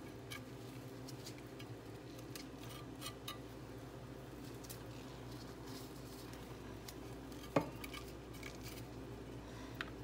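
Faint scrapes and light clicks of a kitchen knife working over goat meat and bone in a bowl, with one sharper knock about seven and a half seconds in. A steady low hum runs underneath.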